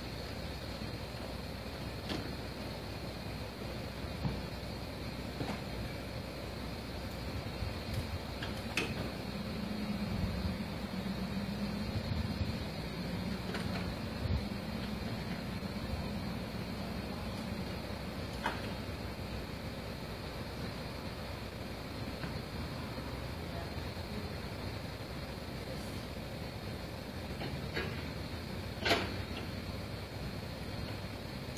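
A tractor engine heard from a distance, with a low hum that swells from about ten to seventeen seconds in. Scattered sharp knocks and clicks come through it, the loudest shortly before the end.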